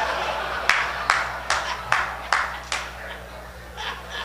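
Six slow, evenly spaced hand claps, about two and a half a second, growing fainter, over a steady low hum.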